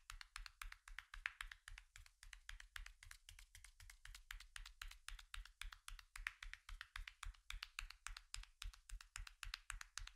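Faint, quick, even pats of a massage therapist's hands on the skin of a neck and shoulders, about six a second.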